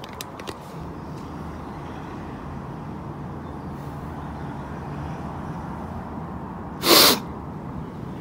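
Steady outdoor background noise while walking, with a few faint clicks near the start, then a sudden loud rush of noise lasting under half a second about seven seconds in.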